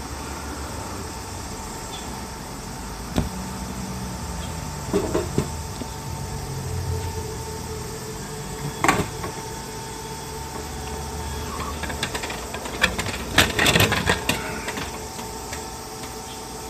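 Capsule-toy vending machine dispensing a plastic gacha capsule: a low wavering hum from the mechanism, a few separate knocks, then a louder cluster of knocks and clatter near the end as the capsule is taken from the tray.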